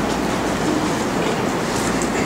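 A steady, fairly loud rushing noise with a low rumble underneath and a few faint clicks.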